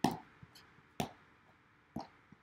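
Three short knocks about a second apart, the first the loudest.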